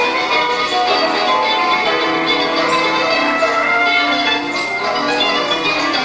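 Bells ringing, many overlapping tones in a steady, continuous peal.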